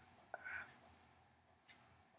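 Near silence, broken about half a second in by a brief, faint whispered utterance from a woman's voice.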